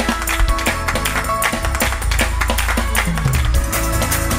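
Live gospel band playing a fast praise break: quick, steady drum hits over bass and keyboard, with the bass sliding down about three seconds in.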